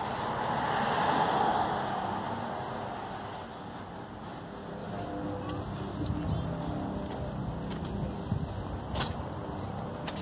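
A car passing on the street, its noise swelling about a second in and fading away by about three seconds, followed by steady low traffic noise.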